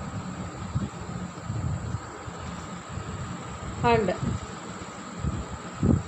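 Steady low background rumble with a faint, unchanging high-pitched tone under it. A single spoken word about four seconds in.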